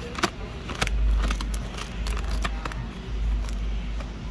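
Scissors snipping through the top of a plastic-lined coffee bag, with the bag crinkling, as a quick run of sharp clicks and rustles over a low rumble.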